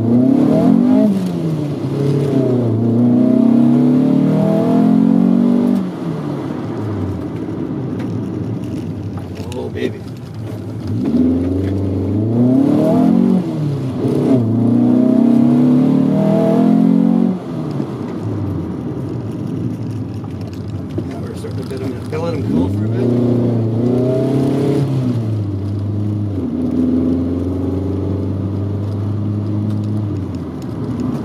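1983 Volkswagen Rabbit GTI's engine heard from inside the cabin, revving up in pitch under acceleration in several pulls and falling back between them, with sudden drops in level after the pulls at about six and seventeen seconds.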